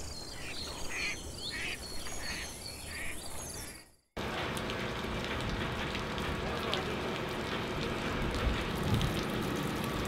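Birds chirping and an insect trilling, fading out about four seconds in. After a moment of silence, a steady rush of running water with scattered small drips and clicks starts abruptly.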